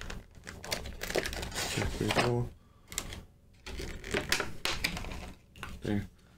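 Clear plastic blister packaging clicking and crackling as it is pried and flexed open by hand, in two spells of quick clicks with a short pause between. A brief vocal sound comes about two seconds in.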